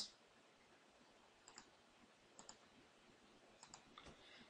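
Near silence broken by a few faint computer mouse clicks: one about a third of the way in, one past the middle, and a quick pair near the end.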